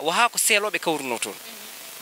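A man talking into a close microphone, his speech breaking off about two-thirds of the way in, leaving a faint steady background.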